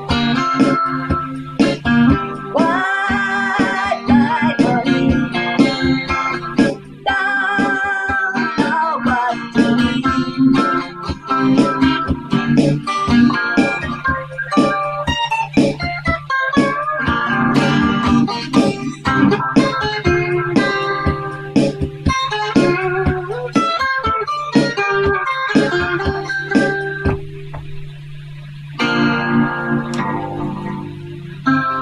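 Telecaster electric guitar playing improvised lead lines, with string bends and sliding notes, over a steady low drone. The playing drops away briefly near the end, then comes back in loudly.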